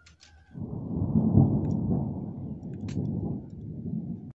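Wind buffeting the microphone: a low, uneven rumble that starts about half a second in and cuts off abruptly just after the end, with a faint click near three seconds.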